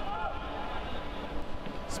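Quiet soccer-match ambience: a low steady background with faint distant shouting voices, mostly near the start.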